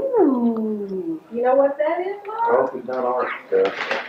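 A person's voice: a long drawn-out exclamation sliding down in pitch over about a second, then excited talk that is hard to make out.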